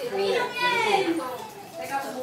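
People's voices talking in a group, dropping to a lull near the end.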